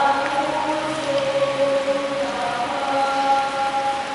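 A choir singing a slow offertory hymn in long held notes, during the preparation of the gifts at Mass.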